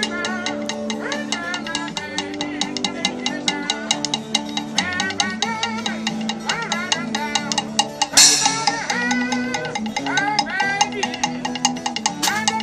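Small street band playing an upbeat tune live: a washboard scraped and tapped in a quick steady rhythm, acoustic guitar, and a wavering melody line on top. A cymbal mounted on the washboard crashes once, loudly, about eight seconds in.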